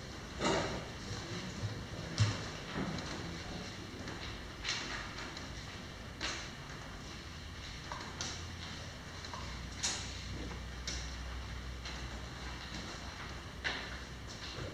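Paper and folders being handled at a meeting table: a scattering of short rustles and light knocks, about one every second or two, over a steady low room hum.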